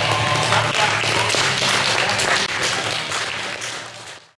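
Audience applauding, with background music underneath; the sound fades away near the end.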